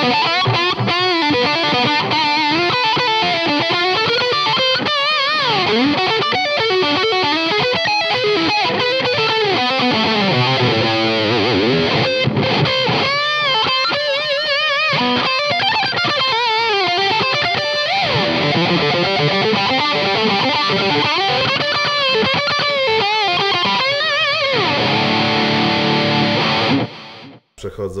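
Electric guitar on its humbucker pickup through an amplifier turned fully up: a meaty overdriven lead tone, played with wide vibrato and bends. It cuts off suddenly near the end.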